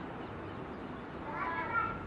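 Steady background hiss, with a short, faint, high-pitched call lasting about half a second, beginning about 1.3 seconds in.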